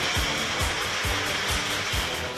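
Electric countertop blender (juicer jug) running steadily as it blends watermelon chunks with milk: an even motor whir. Background music with a steady beat plays underneath.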